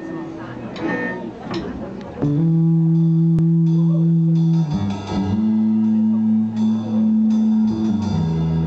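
Live rock band's amplified instruments: audience chatter and scattered guitar sounds, then from about two seconds in, long loud steady held notes that drop to a lower note about halfway through and hold again.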